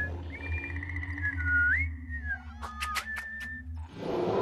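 Cartoon soundtrack: a whistled tune with sliding pitch over a low steady drone. About two and a half seconds in comes a quick run of about six sharp clicks.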